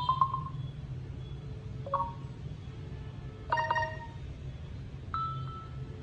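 Samsung Galaxy A13 playing short previews of its built-in notification tones through its speaker, one brief chime as each tone in the list is tapped: four different chimes, about one every one and a half to two seconds.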